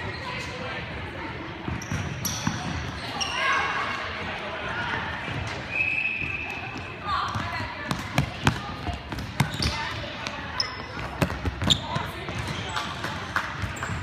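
A futsal ball being kicked and bouncing on a wooden gym floor, with a run of sharp kicks in the second half, over voices of players and spectators echoing in a large hall.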